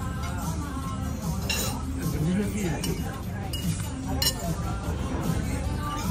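Cutlery clinking against plates and dishes several times during a meal, over background voices and music, with a steady low hum underneath.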